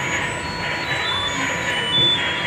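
Busy amusement-park din around kiddie rides: a hubbub of voices with a steady high electronic tone and scattered short, higher electronic beeps.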